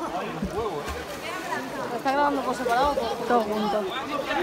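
People's voices talking and calling out, getting louder from about two seconds in.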